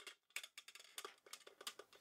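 Faint, irregular light clicks and taps of aluminium saucepans from a nested Trangia 25 cook set being handled and lifted apart.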